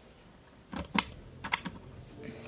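A handful of sharp clicks and taps: two at about three-quarters of a second and a second in, then a quick cluster of three around a second and a half, over a faint low hum of room noise.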